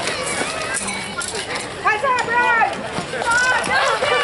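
Several people's voices calling out loudly and overlapping, from about two seconds in, as the armoured fighters go down. A few faint knocks come in the first second.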